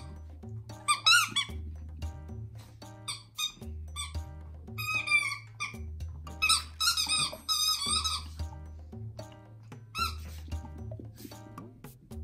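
A dog's squeaky toy squeaking in repeated bursts as the chihuahua bites it, over background music with a steady beat.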